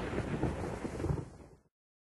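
Thunder rumbling, fading after about a second and cutting off to silence near the end.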